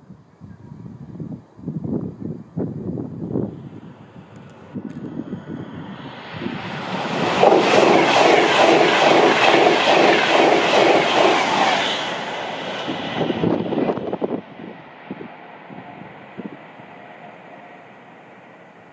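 Express passenger train passing at speed close by. It builds over a few seconds, is loudest for about four seconds with a fast, even clatter of wheels over the rail joints, then fades away.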